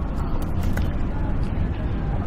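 Steady low room rumble with faint voices in the background and a few soft clicks.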